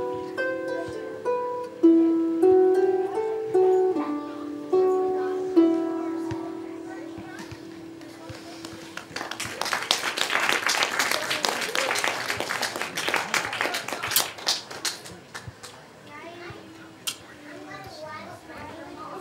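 Harp and plucked strings play the closing phrases of a slow tune, ending on a long ringing note about six seconds in. After a short pause, applause follows for about six seconds and dies away into light chatter.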